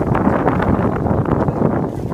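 Wind buffeting the microphone: a loud, steady rumbling noise.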